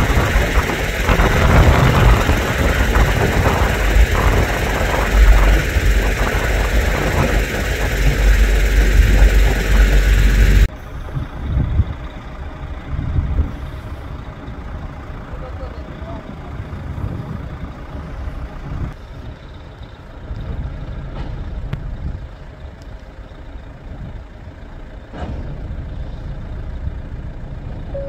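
Loud rushing noise with a deep rumble, cut off suddenly about ten seconds in. After the cut, emergency vehicles' engines run at idle with people's voices in the background.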